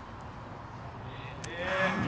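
Quiet outdoor background, then a single sharp tick about one and a half seconds in, followed by voices calling out with falling pitch near the end.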